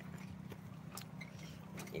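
Handling noise on a phone's microphone: a few sharp clicks and knocks over a steady low rumble, with faint voices in the background.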